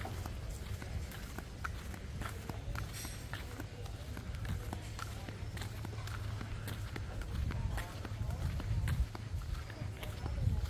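Flip-flops slapping with each step as a person walks at a steady pace on a concrete path, over a steady low rumble.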